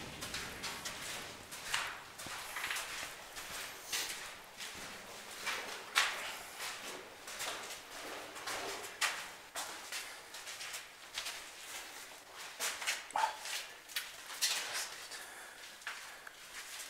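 Footsteps scuffing and crunching on a gritty concrete floor, irregular steps about once or twice a second.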